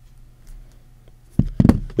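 Mostly quiet, then a few short knocks about one and a half seconds in as a phone in a hard plastic case is set down on a wooden tabletop.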